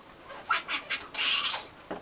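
A man laughing in short, breathy, high-pitched bursts, then a longer hissing wheeze of laughter.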